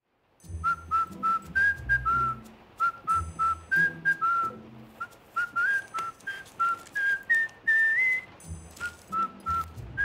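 A person whistling a melody in short, clear notes that climbs a little higher near the end, over a low beat underneath.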